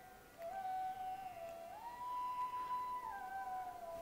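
Soft background music: a single pure sustained tone holding one note, gliding up to a higher note about a second and a half in and sliding back down near the end.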